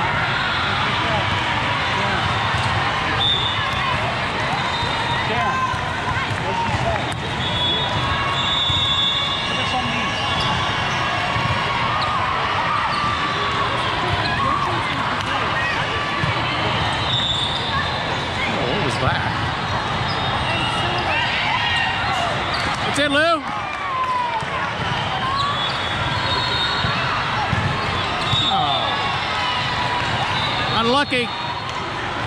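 Steady din of a large hall with several volleyball courts: many overlapping voices from players and spectators, and volleyballs being hit and bouncing on the courts. A short warbling whistle sounds about three-quarters of the way through.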